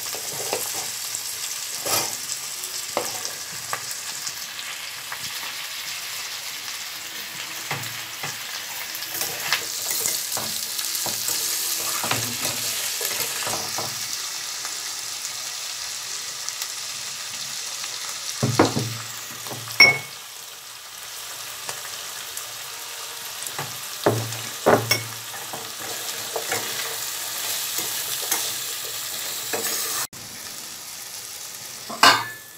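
Sliced onions and potato pieces frying in oil in a non-stick kadai, a steady sizzling hiss, with a metal spatula scraping and knocking against the pan as they are stirred. The loudest knocks come in two clusters, about two-thirds and four-fifths of the way through.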